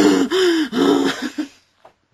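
A person laughing: a run of breathy "ha" bursts, about three a second, that dies away after about a second and a half.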